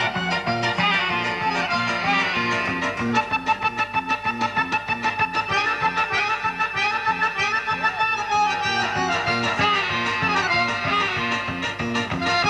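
Piano accordion playing a fast solo showpiece, quick runs of notes with passages that run down in pitch, over a steady bass pulse.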